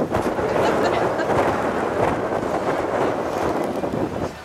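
Wind buffeting the microphone on the open top deck of a moving ferry, a steady loud rushing noise.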